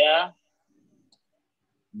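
A man's speech breaking off just after the start, then near silence with one faint tick about a second in, before speech resumes at the very end.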